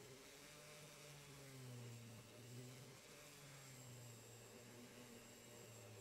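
Near silence, with the faint hum of a flex-shaft rotary tool running a wire brush on a diecast metal body. Its pitch wavers slightly as it runs.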